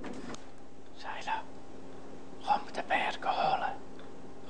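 Soft whispered words, a short phrase about a second in and more between about two and a half and three and a half seconds, over a faint steady hum: a whispered instruction given to a small child as a hearing test.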